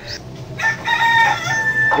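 A rooster crowing once: one long, high call that steps in pitch, starting about half a second in.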